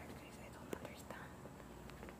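A woman whispering quietly, with a few small clicks.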